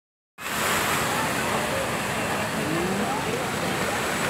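Water jets of a large illuminated fountain spraying and splashing back onto the pool, a steady rushing hiss that begins a moment in, with faint voices of people nearby.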